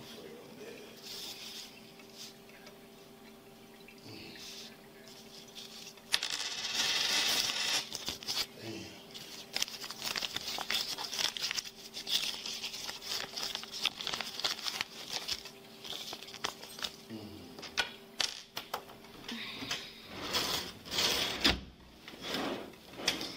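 A low steady hum from the room's equipment under close-up rustling, clicks and small knocks of things being handled at a desk, louder from about six seconds in.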